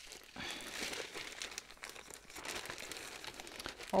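Clear plastic bag holding a cross-stitch pattern kit crinkling as it is handled, a faint, irregular rustle with small crackles.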